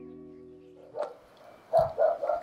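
An acoustic guitar chord rings out and fades away over the first second. Near the end a dog barks several times in quick succession.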